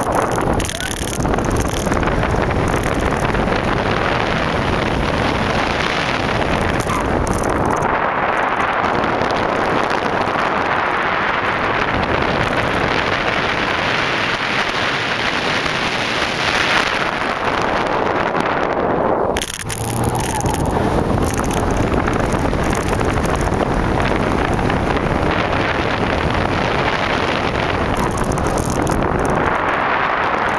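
2004 Porsche Boxster S driven hard through an autocross course: its flat-six engine and tyres under a loud, steady rush of wind on the microphone. The sound drops briefly about two-thirds of the way through, then resumes.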